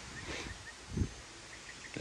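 Quiet outdoor ambience with a faint chirp repeated evenly, about five times a second, that stops near the middle. A brief low thump comes about a second in.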